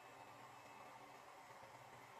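Near silence: a faint, steady hiss with no distinct sounds.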